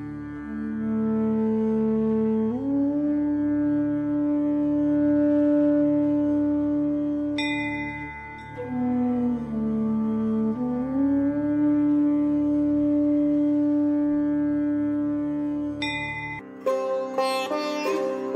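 Indian classical sitar music: long held melody notes that slide up and down in pitch (meend) over a steady low drone, with bright plucks twice. Near the end the drone drops out and quicker plucked notes follow.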